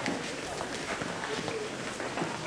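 Busy ward background: indistinct chatter from several voices, with footsteps and small clatter.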